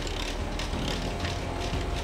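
Cashew cutting machine running: a steady low mechanical hum with light clicking.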